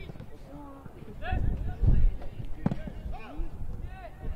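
Players calling out to each other across a football pitch in short shouts, with a single sharp thud of the ball being kicked about two-thirds of the way through.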